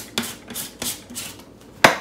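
Plastic protein powder tub handled on a kitchen counter: a few light plastic knocks and clicks, then one sharp knock near the end as the tub is set down.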